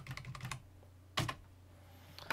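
Computer keyboard keys being pressed while coding: a quick run of keystrokes in the first half second, then a single louder key press a little after a second.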